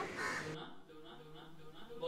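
Harsh bird calls in the first half second, then a quieter stretch with a low steady hum.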